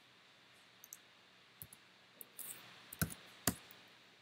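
Computer mouse and keyboard clicks: about ten light, irregularly spaced clicks, the two loudest about three seconds in and half a second later.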